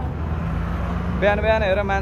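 Low, steady rumble of road traffic with a steady engine hum through the first second. A man's voice starts a little over a second in.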